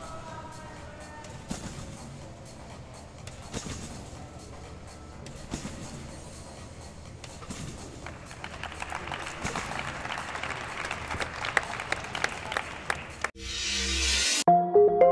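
Trampoline bed thudding about every two seconds under a bouncing gymnast, in a large hall's reverberant ambience. After the routine ends, about two-thirds of the way in, an arena crowd claps and cheers, swelling. Near the end the sound cuts off and music starts abruptly.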